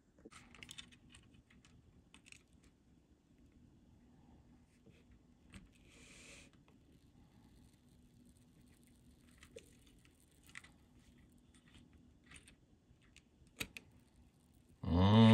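Near silence: faint scattered ticks and clicks, with a brief soft hiss about six seconds in, as a soldering iron presses desoldering braid onto a solder lug to remove a ground connection.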